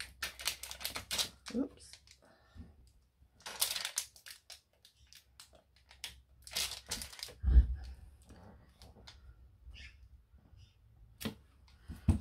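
Clear photopolymer stamps being peeled off and handled on their plastic carrier sheet: crinkling and ticking of thin plastic in several short clusters. There is a soft thump about seven and a half seconds in.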